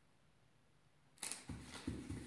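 Near silence, then a little over a second in, a cat starts scrambling about inside a cardboard box house: a sudden burst of scratching and rustling with sharp clicks and repeated thumps.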